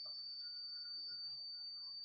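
Quiet background with no speech: a steady high-pitched tone and a faint low hum, the recording's electrical noise.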